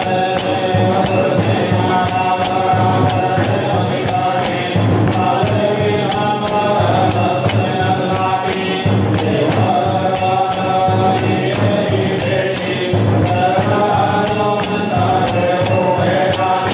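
Hindu devotional song: a sung, chant-like melody over a steady percussion beat.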